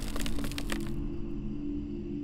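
Horror title-sting sound effects: a few sharp cracks in about the first second over a low, sustained musical drone that slowly fades.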